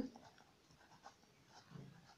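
Faint sound of a pen writing a word on lined notebook paper.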